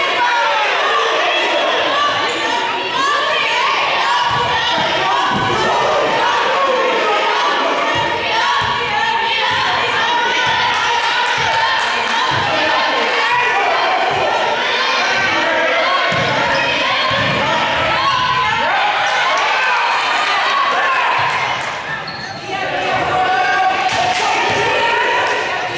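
A basketball being dribbled on a hardwood gym floor, with repeated bounces, under constant shouting and talk from players and spectators.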